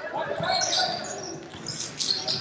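Basketball being dribbled on a hardwood gym floor, with short high squeaks from players' sneakers on the court.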